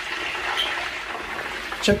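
Pork leg deep-frying in hot oil in a lidded aluminium wok: a steady sizzle and bubbling of the oil.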